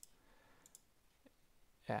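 A few faint, sharp clicks from work at a computer's keys or mouse, over quiet room tone. A spoken word starts right at the end.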